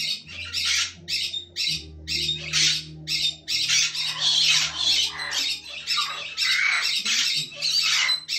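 A white cockatoo screeching in a series of short harsh squawks, running into a longer stretch of near-continuous screeching in the second half. A steady low hum sits underneath.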